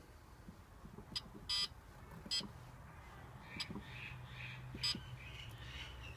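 Short electronic beeps from a kiln controller's keypad as its buttons are pressed: five brief beeps at irregular spacing, the second a little longer than the rest.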